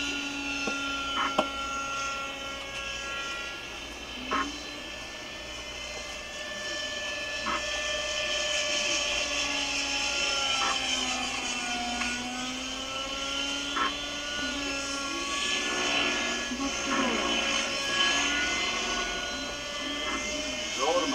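Model helicopter's O.S. 61 two-stroke glow engine and rotors running in flight. The engine note slides up and down as it manoeuvres, with a few short clicks.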